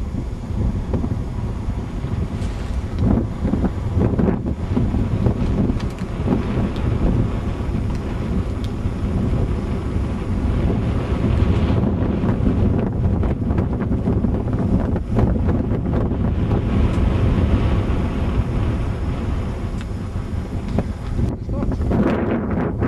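Strong wind blowing across the microphone: a loud, low buffeting noise that rises and falls in gusts.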